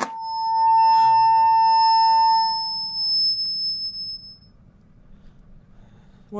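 A heavy rock song cutting off dead as the plug is pulled, leaving a loud, steady, high electronic tone ringing on for about three seconds before it fades out.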